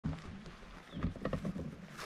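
Camera handling noise: a thump at the start, then a cluster of soft knocks and rustles about a second in as the camera is moved into position.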